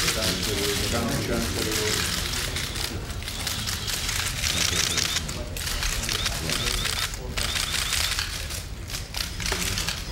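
Rapid clicking of many press cameras' shutters and motor drives, going on without a break, over a low murmur of voices.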